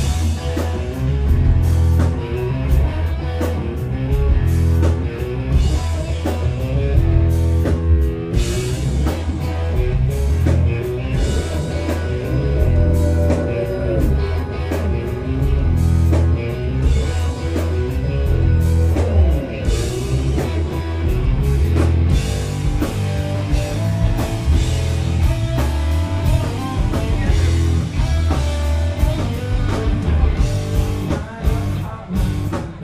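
Rock band playing live: electric guitar over a drum kit and bass, loud and steady.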